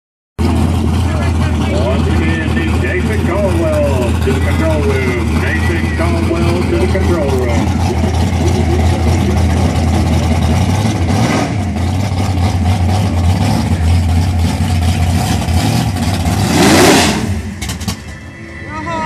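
Drag car engines running at a steady, deep idle, with voices mixed in; near the end a louder surge of engine noise swells and then drops away as a car revs.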